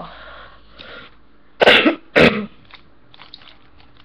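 A person coughing twice: two short, loud coughs about half a second apart, a little past the middle.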